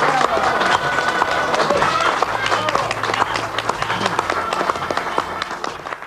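Wordless voices over a clatter of clicks and knocks, fading out at the end.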